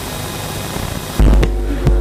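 Steady hiss from the chamber's microphone system. About a second in comes a click and a loud low electrical hum, as a microphone is switched on, and there is a second click shortly after.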